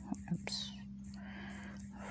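Faint whispered, breathy voice sounds over a steady low hum.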